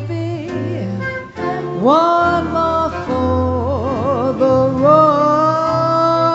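A woman singing a slow melody into a microphone over live instrumental accompaniment. About two seconds in, a note slides up and is held, and later notes waver in a wide vibrato before a long sustained note.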